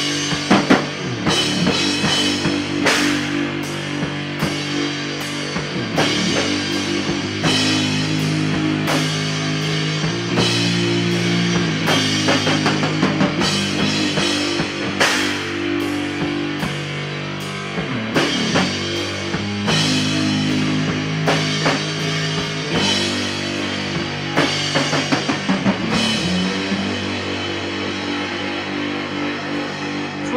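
Live rock band playing an instrumental passage: electric guitar holding low chords that change every second or two over a drum kit with frequent cymbal and drum hits.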